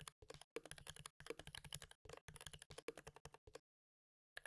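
Quiet, rapid typing on a computer keyboard, a fast run of keystrokes that stops about three and a half seconds in.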